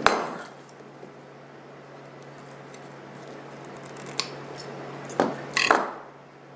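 A wooden dowel armature topped with a ping pong ball set down on a metal jar lid with one sharp knock, then a few light clicks and taps of handling near the end.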